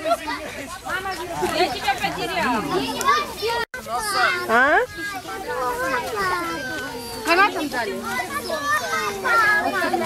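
A crowd of children shouting and chattering at play, many high voices overlapping, with adults' voices among them. The sound drops out for an instant just under four seconds in.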